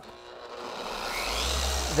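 Large-stroke dual-action paint polisher being switched on, its motor spinning up to speed: a whine rises in pitch and a low hum grows steadily louder.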